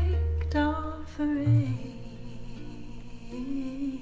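Live acoustic folk performance: a voice sings a short wavering phrase over double bass and acoustic guitar. The bass drops away about halfway through, leaving quieter held notes.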